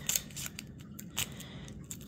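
A plastic heart-shaped toy capsule being handled and opened: a few sharp clicks and snaps, the loudest about a second in.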